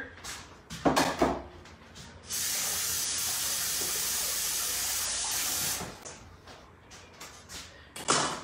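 Kitchen faucet running into a sink for about three and a half seconds, starting and stopping abruptly, after a brief knock about a second in.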